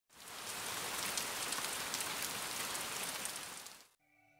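A steady, rain-like hiss with many faint crackles. It fades in at the start and fades out just before the end.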